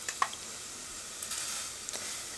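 Pieces of raw pork rib dropped by hand into a pot of boiling water, making small splashes and plops over the steady hiss of the boiling water. There are a couple of short sharp clicks near the start and softer splashes in the second half.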